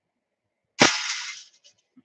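A single sharp bang about a second in, like something hitting or being set down hard, with a short hissing, rustling tail and a couple of faint clicks after it.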